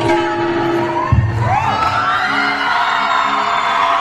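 A women's choir performing an Indian group song live through a PA, with instrumental accompaniment. There is a single thump about a second in, and then the voices swell into a long held note.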